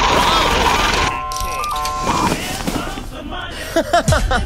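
Electronic ATM sound effect: a steady beep, then a quick run of stepped beeps, over background music. Near the end comes a short burst of voice.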